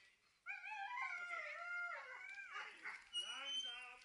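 Harnessed sled dogs of a husky team howling and yowling in excitement: one long, wavering high call starts about half a second in, then more calls overlap and drop in pitch near the end.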